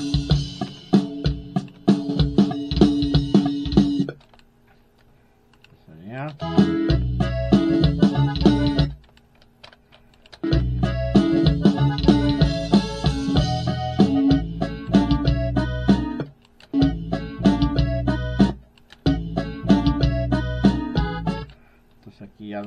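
Playback of a norteño song with drum loops placed under it, played in about five stretches that stop and restart with short silences between.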